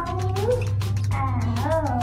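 Baby cooing and gurgling with the toy in her mouth, in high gliding vocal sounds over steady background music.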